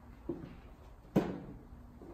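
Footsteps on a hardwood floor: two thuds about a second apart, the second, a little past a second in, much louder.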